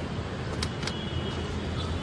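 Steady background noise, a low hum under an even hiss, with two faint clicks just under a second in.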